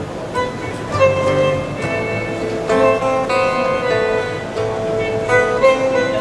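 Acoustic guitar strummed under a melody of held, smooth electronic notes from a Magic Flute, a breath-and-head-controlled electronic wind instrument, playing a tune together.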